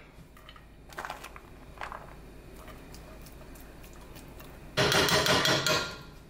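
Diced onion being spooned from a glass container into a frying pan: a couple of faint clinks, then about a second of loud scraping and rustling near the end.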